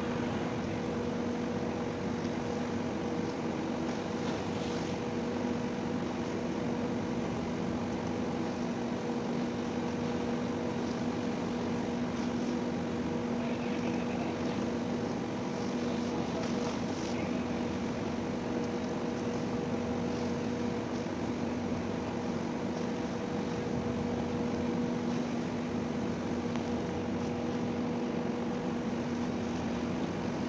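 Ship's diesel engine running steadily: a constant low drone with an even hum.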